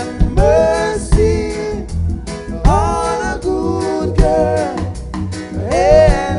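Live reggae band music: a male lead vocal sung in long phrases over bass, drum kit and guitar.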